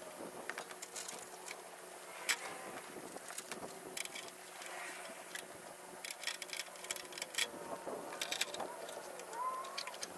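Faint, irregular clicks and rustling as nylon tie-down strap webbing is handled and tied off.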